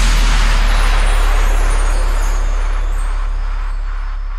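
The final held note of an electro house track: a deep sub-bass tone ringing on after the beat stops, with a hissy wash above it, slowly fading out as the track ends.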